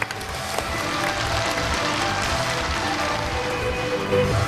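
Studio audience applauding over stage entrance music.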